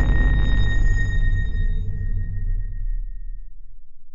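The tail of an outro sting's music and sound effects dying away: a deep rumble and a high, ringing tone fade out slowly together.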